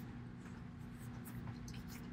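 Quiet room tone with a steady low hum and a few faint, short clicks.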